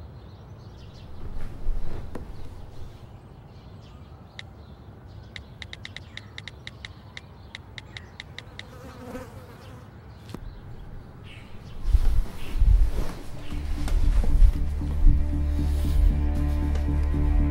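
Low room hum, then a quick run of evenly spaced phone keypad taps, about six clicks a second for some three seconds, as a text message is typed. Near the end, low thumps lead into a loud, sustained dark music drone.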